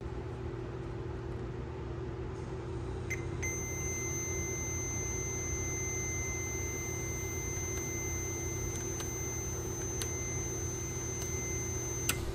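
Multimeter continuity beeper giving a steady high beep from about three seconds in until it cuts off near the end. The beep shows that the pressure switch's contacts 1 and 2 are closed. A steady low hum runs underneath, with a few faint clicks.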